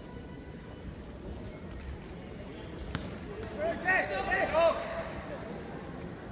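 A single sharp knock, then about a second later a burst of short, loud shouts echoing in a large sports hall during a taekwondo bout.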